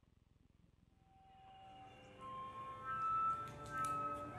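Near silence for about a second, then a small outdoor wind-and-string ensemble comes in softly with held notes entering one after another and building up.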